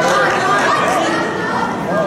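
Crowd chatter: many voices talking at once among the spectators and athletes around the mat, with no single speaker standing out.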